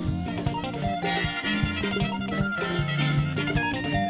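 Live band playing upbeat music with a steady drum beat, guitar and saxophone.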